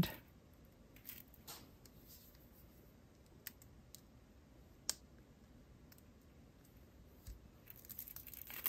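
Faint, scattered small metal clicks of jewelry pliers working a jump ring on the end of a beaded strand; the sharpest click comes about five seconds in.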